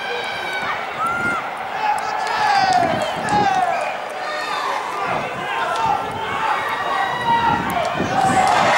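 Several voices shouting and calling out over one another during a rugby match, with a steady background noise underneath.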